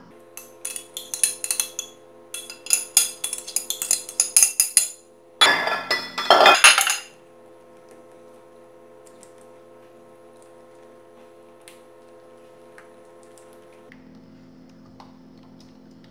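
Kitchen utensils at work: a spatula clinking and scraping against a dish as cream is scraped out into a saucepan, a quick run of clinks for about five seconds, then a louder scrape and clatter around six seconds in. After that only a faint steady hum remains while the mixture is stirred.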